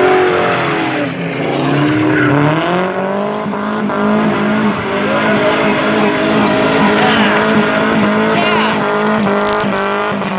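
Drift cars' engines revving hard, the pitch falling and climbing twice in the first few seconds and then held high and fairly steady, with tyres squealing as the cars slide sideways.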